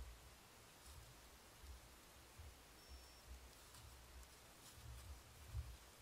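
Near silence: faint steady hiss with soft, irregular low thumps now and then and a brief faint high-pitched tone about halfway through.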